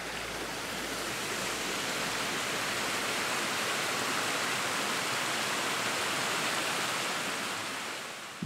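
A small mountain stream rushing and splashing as it cascades over rocks, a steady even rush of water that fades out near the end.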